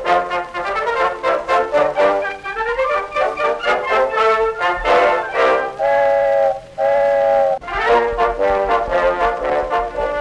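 Background music with brass instruments: a run of short notes, then two long held chords about six and seven seconds in.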